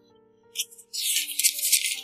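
Crinkling of a white wrapper being handled. It starts with a short burst about half a second in and runs loudest through the second half, over soft background music with held notes.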